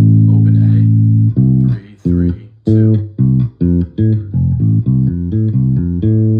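Electric bass guitar played fingerstyle, running a major arpeggio pattern starting on G. It opens with a long held low note, then about a dozen separate plucked notes stepping up and down in pitch, and ends on a held low note.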